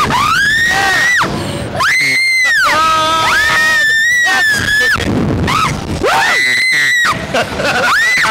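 Riders on a Slingshot reverse-bungee ride screaming: a string of long, high-pitched screams, each held for a second or two, one after another. In the middle a second, lower voice holds a scream alongside.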